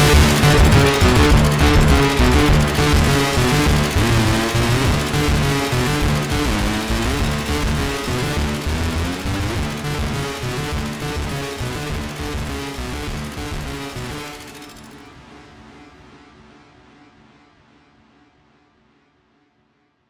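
Experimental electronic music built on an Arturia MicroBrute analog synthesizer, heavy in the low end, fading out slowly. The fade steepens about two-thirds of the way through, and the music dies away to silence shortly before the end.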